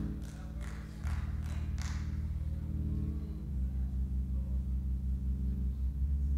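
Low sustained keyboard chords held under a pause in the preaching, moving to a new chord every second or two.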